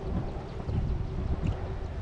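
Wind buffeting the microphone, with soft footsteps on wooden dock boards.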